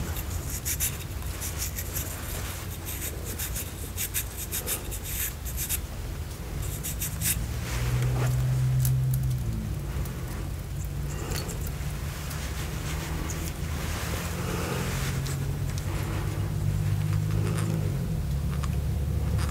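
Makeup brush bristles scratching and rustling close to the microphone, crackly at first and softer after about seven seconds, over a steady low hum.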